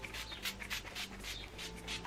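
Pump-action spray bottle of heat protection spray being pumped onto hair in a rapid run of short sprays, several a second.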